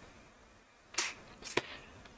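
Tarot cards being handled: two short clicks, a sharp one about a second in and a softer one half a second later.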